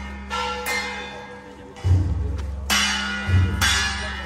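Temple-procession percussion: a big drum thumping while gongs and cymbals are struck in an uneven beat, the metal ringing on between strokes. It accompanies the deity-figure dance.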